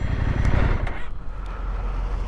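Husqvarna Norden 901's parallel-twin engine running at low speed, with an even haze of wind and tyre noise over a low rumble that eases off under a second in.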